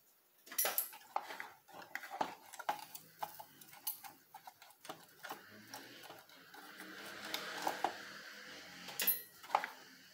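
Irregular light clicks and clinks of a soldering iron and a computer motherboard being handled on a workbench, with a steady hiss for a few seconds past the middle.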